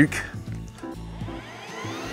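Greenworks 48-volt cordless brush cutter's electric motor spinning up, a rising whine starting about a second in, over background music.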